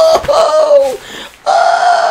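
A man's loud, drawn-out excited "hoo" calls, laugh-like whooping: two long held high notes, each sliding down in pitch at its end, with a short break between them.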